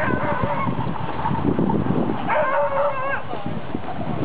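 Sled dogs yelping in high, bending cries, a short one at the start and a longer one just past the middle, over the rumble of the dogsled running on snow.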